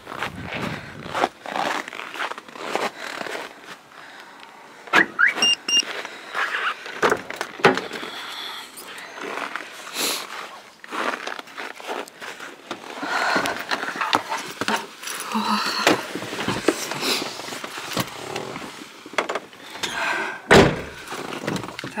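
Footsteps crunching on frozen snow around a frost-covered Chevrolet Lanos, with scrapes and clicks of handling. A short high beep comes about five seconds in, and a loud thunk near the end, as of the car's door.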